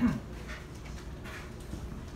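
A person's short grunt, its pitch falling quickly, right at the start, then quiet room noise with faint rustling.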